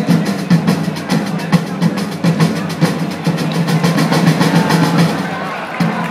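Field drums beating a fast, steady, rolling rhythm, the usual drum accompaniment to a flag-throwing display.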